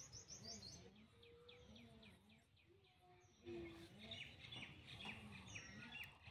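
Faint bird chirping in the background: a quick run of short, high chirps in the first second or so, and another from about three and a half seconds in.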